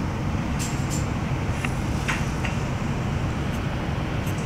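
Cabin noise inside a Renfe Cercanías commuter train: a steady low rumble with a few light clicks and rattles in the middle.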